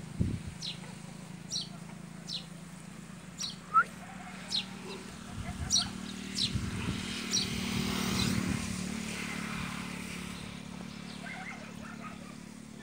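A bird chirping short, high, falling notes about once or twice a second, over a low steady drone that swells in the middle and then fades.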